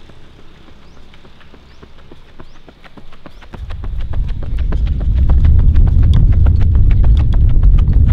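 Quick, evenly spaced footfalls of running shoes striking an asphalt road during an uphill sprint, growing louder. From about halfway a loud low rumble joins in and becomes the loudest sound.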